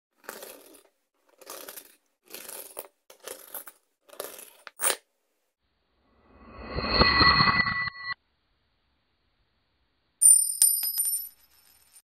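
Silver coins clinking against each other in a run of short metallic clicks over the first five seconds, the last one ringing out as a clear ping. Then a sound swells up for about two seconds and cuts off suddenly, and a high, bell-like ding rings out about ten seconds in.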